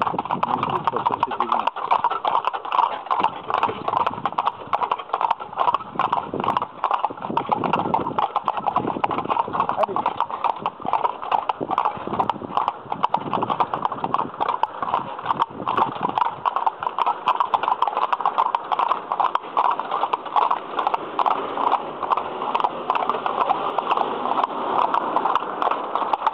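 Hooves of a pair of carriage horses walking on a paved lane, a steady clip-clop of overlapping hoofbeats, heard from the carriage behind them.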